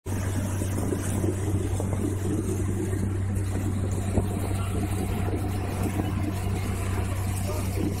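River boat's engine running at a steady low hum, with a constant rush of noise over it.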